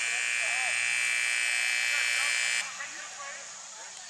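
A match horn sounds one long, steady blast of about three seconds and cuts off suddenly, typical of the timekeeper's signal in rugby sevens.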